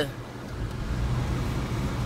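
Car engine and road noise heard from inside the cabin while driving: a steady low hum under a faint hiss.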